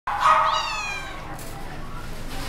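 Domestic cat giving a single meow that falls in pitch, lasting about a second.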